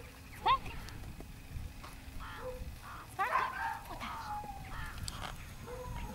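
A woman's voice speaking briefly and softly, with a short high call rising in pitch about half a second in.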